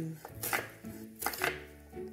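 Kitchen knife slicing an onion on a wooden cutting board: a few separate knocks of the blade reaching the board.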